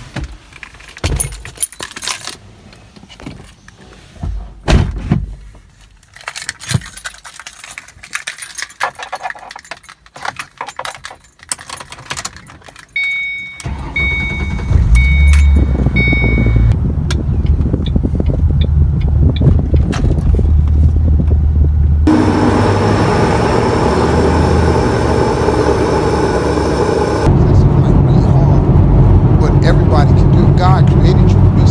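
Keys jangling and clicking inside a car for the first dozen seconds, then the car's engine starts with a sudden loud low sound about 13 seconds in while a dashboard chime beeps about once a second for a few seconds. The engine then runs steadily, and from about 22 seconds the car is driven off with louder, rising engine and road noise.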